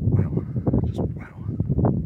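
Wind buffeting an outdoor microphone, a deep uneven rumble, with a few indistinct fragments of a man's voice.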